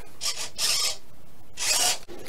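Hobby servos on a Y harness driving the ailerons of a foam-board test plane, three short gritty buzzing runs as the transmitter stick is pushed to full aileron deflection and back, with travel now limited to 70 percent.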